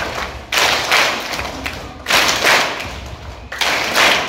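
A large group clapping together in unison bursts in a reverberant hall, three bursts about one and a half seconds apart.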